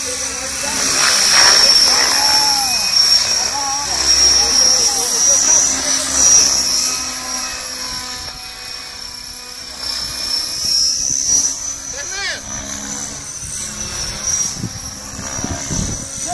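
Radio-controlled model helicopter in flight overhead: a steady high-pitched whine from its motor and rotors that wavers slightly in pitch and dips a little in loudness past the middle.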